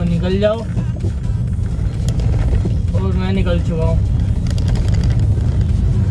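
A song with a singing voice playing from a car stereo, over the steady low rumble of the car's engine and tyres inside the cabin. The voice comes in bursts near the start and again about three seconds in.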